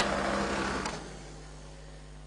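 A click, then the steady hum of a flow-demonstration tunnel's motor. The hum drops away about a second in as the rig is switched off.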